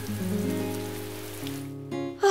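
Steady rainfall hiss under soft, held background music notes. The rain drops away shortly before the end while the music carries on.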